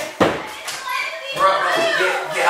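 Raised, strained voices shouting in another room, with a sharp thump about a quarter second in.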